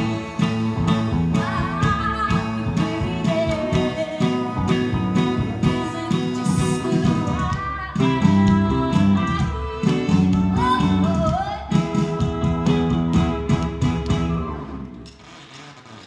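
Live rock band playing on stage: electric guitar, bass guitar and drums, with a woman singing in places. The music thins out and drops away near the end.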